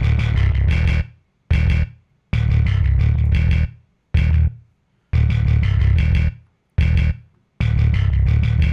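A metal riff played back from Logic, with a programmed bass run through a Pedalboard distortion chain that adds some dirt. Heavy, chugging low notes come in stop-start bursts of different lengths, each cut off sharply by a silent gap.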